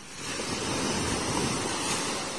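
A small sea wave breaking and washing up onto the beach: a rushing hiss that swells shortly after the start and slowly eases off.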